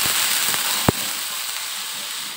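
Chopped garlic, shallot and ginger sizzling in hot oil in a wok, with one sharp click about a second in. The sizzle eases slightly toward the end.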